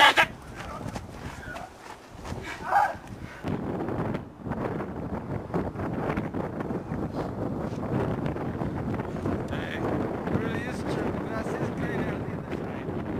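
Steady wind noise on an outdoor microphone, coming in a few seconds in after a short laugh.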